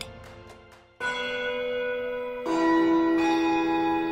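Bell chimes, struck three times about a second apart, each strike ringing on and overlapping the last. A faint tail of background music fades out just before the first strike.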